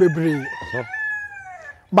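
A rooster crowing once, a long held call that bends down in pitch near the end.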